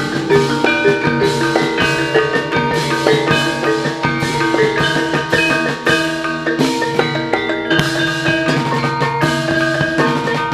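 Javanese gamelan ensemble playing jaran kepang accompaniment: ringing bronze keyed instruments and gongs over kendang hand-drumming, in a dense, continuous beat.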